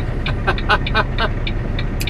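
Semi truck's diesel engine running with a steady low rumble, heard from inside the cab while rolling slowly. A quick run of short sharp ticks sounds over it in the first second or so.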